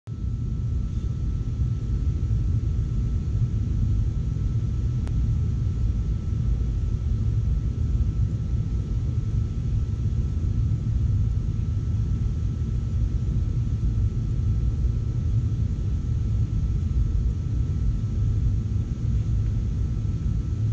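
Steady low rumble of background noise with a thin, faint steady tone above it, and a single faint tick about five seconds in.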